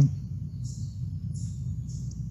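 Steady low outdoor background rumble with faint, intermittent high hiss.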